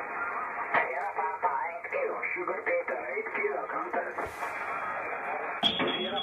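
A Collins R390A receiver's loudspeaker playing single-sideband amateur voice on the 14 MHz band, resolved through a Sherwood SE-3 synchronous detector. The narrow audio is cut off around 2.7 kHz until a click near the end, as the bandwidth switch is turned and the audio widens.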